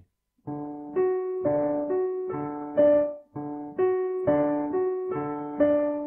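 Yamaha digital piano playing a syncopated ragtime pattern in straight time: a major triad broken into third, octave and fifth notes over the bass, with each phrase starting off the beat. The phrase starts about half a second in, pauses briefly just past the middle, and is played again.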